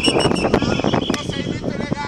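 Players shouting and calling out during a play, with scattered short knocks. A steady high-pitched tone sounds over them and stops about two-thirds of the way through.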